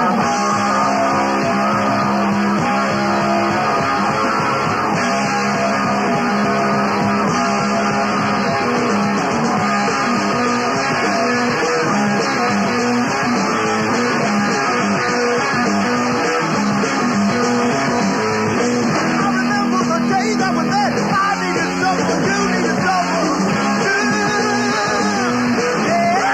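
Rock music driven by guitars, playing steadily at full volume.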